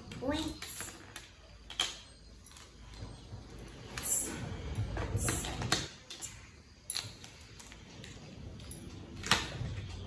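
Small plastic toy tea-set pieces clicking against each other several times as they are picked up and set down on the tray, with a young child's soft voice murmuring.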